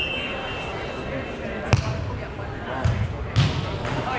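A volleyball struck by hand in an indoor hall: a sharp serve contact about two seconds in, then two more quick hits about a second later as the ball is passed and set.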